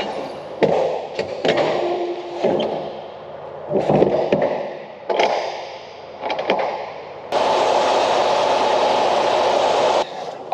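Metal semi-trailer swing doors being handled and shut, with knocks, scrapes and thuds. About seven seconds in, a steady rushing noise starts and continues.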